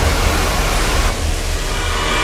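Electronic hardcore DJ-set music at a loud noise section: a dense wash of white noise over a deep bass rumble, the noise thinning about a second in.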